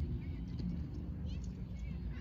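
Outdoor park ambience: a steady low rumble with short bird chirps a few times, the clearest about a second and a half in.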